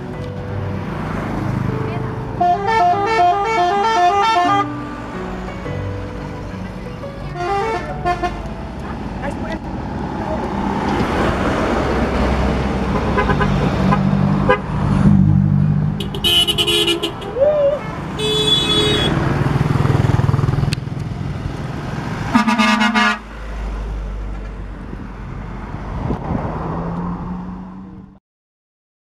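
Passing trucks sounding multi-tone musical horns: one plays a melody of quickly alternating notes for about two seconds, starting about two and a half seconds in, and shorter horn blasts follow around eight, sixteen, eighteen and twenty-three seconds in, over the steady run of truck engines and tyres.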